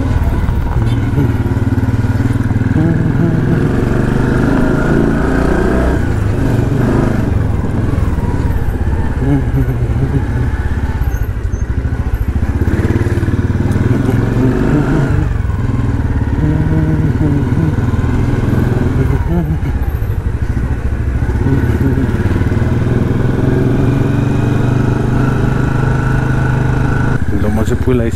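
Motorcycle engine running while the bike is ridden slowly along a street, its pitch rising and falling every few seconds with the throttle.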